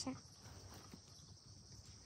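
Faint, steady outdoor background with a thin high hiss and no distinct sound events, just after a woman's voice stops at the very start.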